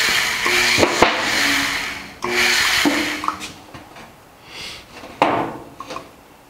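Bead roller forming a bead in a galvanized sheet-metal panel: the sheet scrapes and rubs through the rollers in two spells over the first three seconds, with short low steady tones under it. A sharper clatter of the sheet comes about five seconds in.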